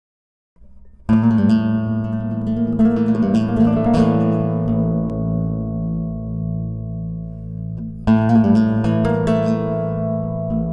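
Tonedevil harp guitar played in a Spanish, flamenco-style improvisation. A sharp strummed flourish starts about a second in and runs into a quick run of plucked notes over deep ringing bass notes. The chord is then left to ring and fade until a second sharp strummed flourish about eight seconds in.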